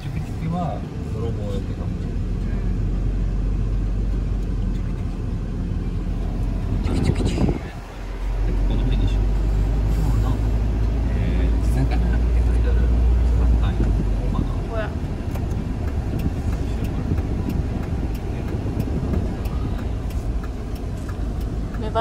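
Engine and road noise heard inside the cab of a Mazda Bongo van driving slowly. The engine note drops briefly about eight seconds in, then picks up again and eases off in the last part.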